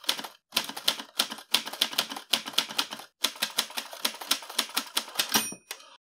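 Typewriter sound effect: rapid runs of key clacks with short pauses, ending in a brief bell-like ding near the end.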